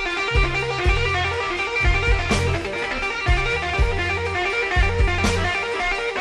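Slow electric blues song: electric guitar over bass and drums, with the drums keeping a steady beat of about two strokes a second.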